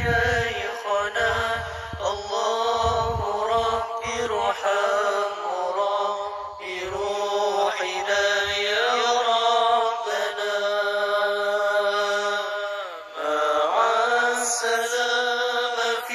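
Arabic Islamic devotional chant (a tawasul qasidah): a voice singing long, ornamented lines with a few held notes, no words clearly spoken.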